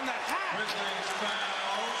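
Basketball arena crowd noise with a basketball bouncing on the court, heard as a few short knocks.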